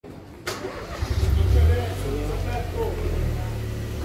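A car engine running close by, a steady low rumble that swells about a second in, with voices talking over it; a single sharp knock about half a second in.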